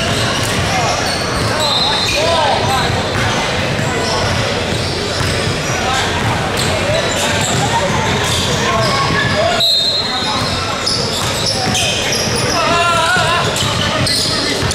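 Basketball game in a gym: a ball bouncing on the hardwood court, sneakers squeaking briefly a few times, and players and spectators calling out, all echoing in the large hall.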